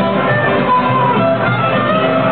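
Live acoustic band playing an instrumental passage: strummed acoustic guitar and bowed violin, with a lead melody of held notes.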